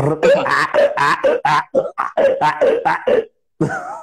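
A man imitating a donkey's bray with his voice: a rapid run of short, loud calls, about four or five a second, that breaks off a little past three seconds in.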